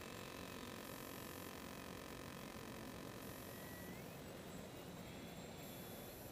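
Faint, thin whine of a distant electric RC warplane's motor and propeller, rising in pitch about four seconds in and again a second later, over a steady faint hiss.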